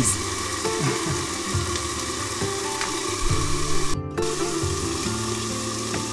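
Food frying in a pan: a steady sizzle, with a low steady hum beneath it. The sizzle briefly cuts out about four seconds in.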